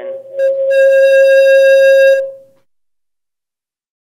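Audio feedback from the meeting's sound system: one steady high-pitched tone that swells over the first second into a loud, harsh, distorted howl, then dies away about two and a half seconds in.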